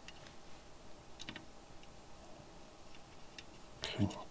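Faint, irregular small ticks and clicks of a soldering iron tip and solder wire touching the joints and leads on a perfboard, with a louder click near the end.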